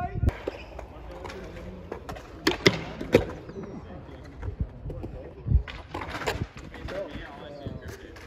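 Skateboard wheels rolling on concrete, with several sharp board clacks on the ground about two and a half to three seconds in and again around six seconds, and a low thud in between.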